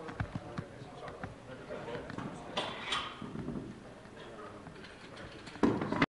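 Indistinct background voices with scattered knocks and clatter, and a louder thump near the end.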